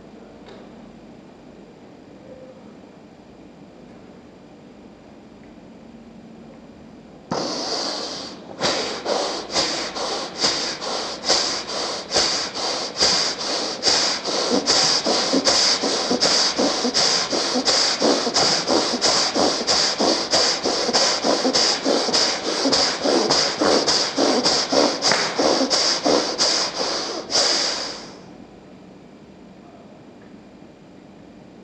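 Bhastrika pranayama (bellows breath): a person breathing forcefully in rapid, even strokes, a little over two a second. It starts with one long forceful breath about seven seconds in and cuts off a couple of seconds before the end.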